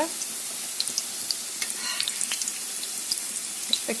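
Minced-meat 'lazy' cutlets frying in hot oil in a pan, nearly done and browned on both sides. The oil gives a steady sizzle with scattered crackles and pops.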